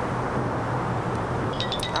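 Steady noise from the room and microphone with no speech, and a quick run of light, high metallic jingles near the end.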